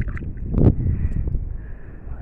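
Wind rumbling on the microphone, with one thump just past halfway.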